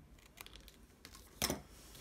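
Scissors cutting black paper: faint, with one sharp snip about one and a half seconds in.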